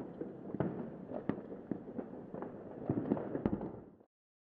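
Firecrackers going off in an irregular crackle of sharp pops over a continuous rumble, cutting off suddenly at the end.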